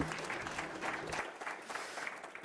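Audience applauding in a hall, the clapping thinning out toward the end.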